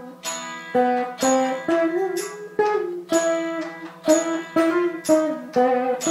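Saraswati veena played solo in Carnatic style: a run of plucked notes about two a second, the pitch bending and sliding between them, over a steady low drone.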